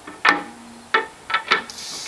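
Telescope truss poles knocking against each other as they are handled and set into the mirror box: four sharp knocks, the first the loudest, with a brief ring after it.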